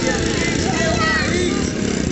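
Motorcycle engines running steadily, mixed with voices.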